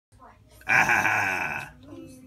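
A person's loud, rough-voiced vocal sound lasting about a second, starting just over half a second in, then trailing off to quieter voice sounds.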